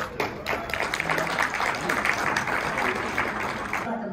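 An audience clapping and applauding, a dense, steady patter of many hands, with crowd voices mixed in.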